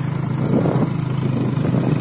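A vehicle engine running steadily, a constant low hum with a rough noisy texture over it.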